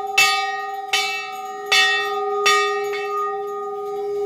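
A large hanging brass temple bell rung by hand, struck about five times at under a second apart, a weaker stroke near the end. Each strike rings on into the next, so a steady bell tone carries through.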